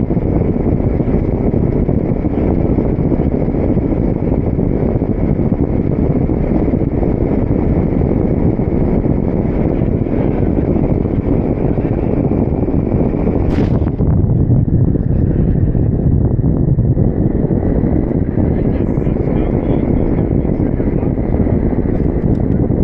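Steady wind noise on the microphone of a camera flying with a tandem paraglider under tow, with a faint steady high tone above it. There is a brief click about two-thirds of the way through.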